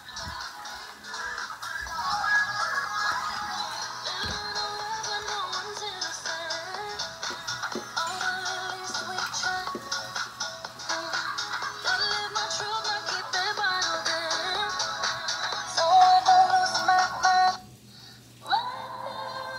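A pop song with sung vocals playing from a tablet's speaker; it cuts off suddenly near the end as the track is skipped.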